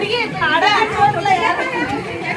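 Speech: women chattering together.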